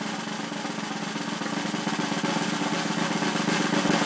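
Snare drum roll in intro music, rising steadily in volume as a build-up.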